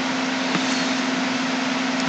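Steady background hiss with a constant low hum, unchanging throughout.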